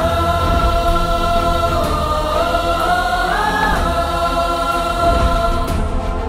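Film background score: a choir holds long notes over a heavy low bass. The melody steps up and back down about halfway through.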